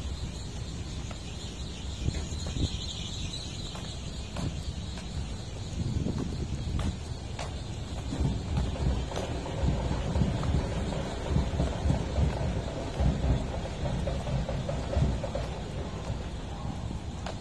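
Wind buffeting the microphone outdoors: a deep, gusty rumble that grows stronger about halfway through.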